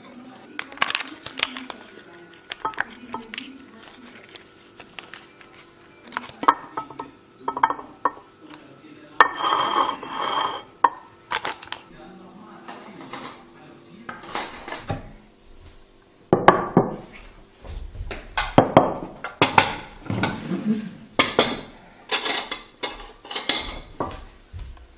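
Ceramic plates and metal cutlery clinking and clattering as a table is laid and food is served: a string of short knocks and clinks, busiest in the second half.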